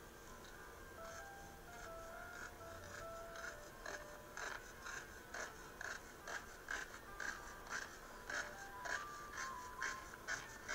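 Soft background music with a slow stepping melody. From about four seconds in, a large paint brush taps against the canvas about twice a second as a tree shape is dabbed in.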